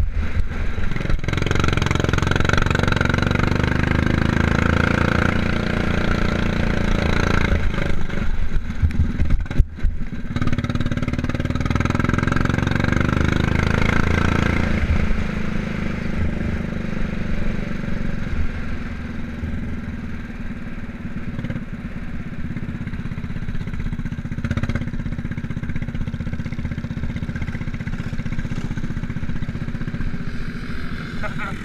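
Off-road motorcycle engine running hard as the bike is ridden over rough grass, with a brief drop in sound just before ten seconds in. From about halfway it runs at lower revs and more quietly.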